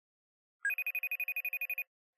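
An electronic trilling ring: a single burst of high, rapidly pulsing tone, about fourteen pulses a second, starting about half a second in and lasting just over a second.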